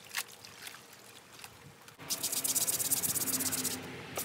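Wet cloth handled in a plastic basin of soapy water with small splashes and drips, then from about halfway a bar of soap rubbed in fast, even strokes over a wet white garment held against a wooden board, a loud quick scrubbing that stops just before the end.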